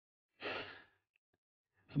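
A man's single short audible breath, half a second in, taken in a pause between spoken sentences.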